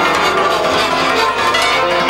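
Live folk music led by a concert cimbalom: hammered strings struck in quick, dense runs of ringing notes.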